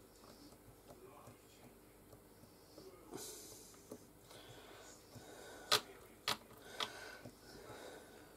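Quiet handling of soft polymer clay as fingers press it into a silicone mould, with a short sniff about three seconds in and three sharp clicks or taps around six to seven seconds in.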